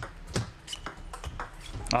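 Table tennis rally: the ball clicking sharply off the players' rackets and the table, a quick string of several clicks a second.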